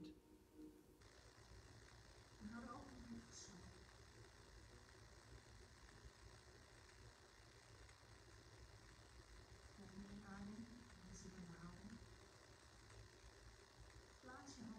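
Near silence: quiet room tone, broken twice by a few soft words from a woman, a couple of seconds in and again around ten seconds in.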